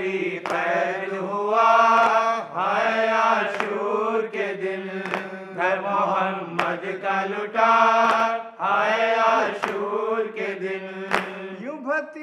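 A group of men chanting a noha, the Shia Muharram lament, in unison with long drawn-out lines. Hands strike their chests in matam, a sharp beat about every second and a half.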